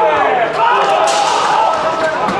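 Loud, excited voices shouting as a goal is scored, with a few sharp knocks over them.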